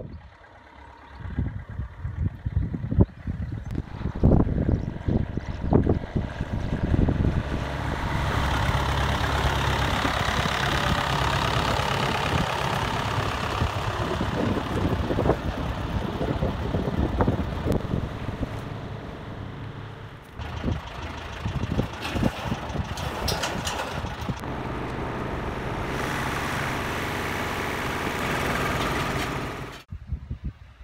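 Vintage tractor engine running steadily at low speed as it drives over a bumpy gravel drive, with sharp clanks and knocks from the loaded front lift and pallet.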